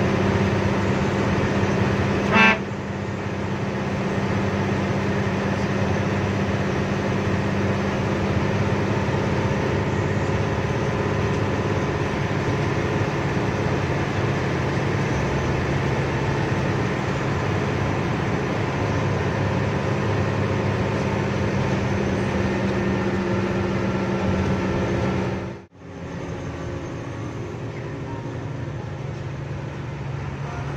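Steady drone of a bus engine heard inside the cabin while the bus drives along. A short horn toot about two and a half seconds in is the loudest moment. Near the end the sound cuts out for an instant and comes back quieter.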